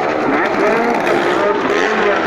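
Car and motorcycle engines running as they circle the wall inside a wooden well-of-death drum, their pitch rising and falling as they pass.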